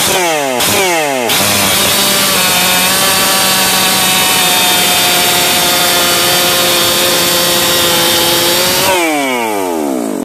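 Ported Solo 681 two-stroke chainsaw with a 32-inch bar and square-ground skip chain. It is blipped a few times, then held at full throttle, cutting through a large log for about seven seconds with a steady engine note under load. Near the end it breaks through, and the revs fall away in a few quick blips.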